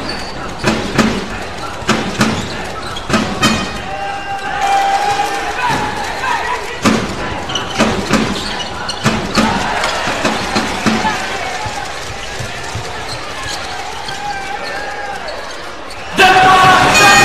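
Basketball being dribbled on a hardwood court, the bounces coming about twice a second at first and then more slowly, over voices and crowd noise echoing in an arena hall.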